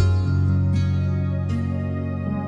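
Soft, slow instrumental background music of held notes, with a new chord entering right at the start.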